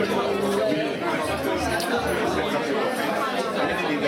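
Steady overlapping chatter from a roomful of people talking at once.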